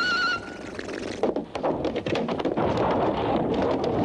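Cartoon sound effects: a short tune breaks off early, then about a second in a clattering crash begins and runs into a steady, noisy rumble as a heap of junk is pushed over into a cloud of dust.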